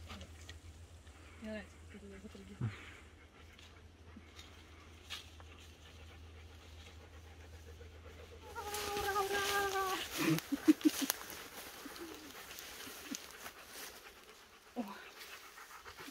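A dog panting in quick, loud breaths about ten seconds in, just after a short held voice-like tone. The first half is quiet apart from a low steady hum.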